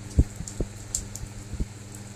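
Small knocks and ticks of parts being handled on a workbench: one sharp click about a fifth of a second in, then a few fainter ticks. A steady low hum runs underneath.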